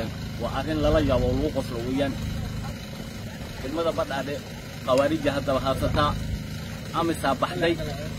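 A man talking in Somali in phrases with short pauses, over a steady low rumble.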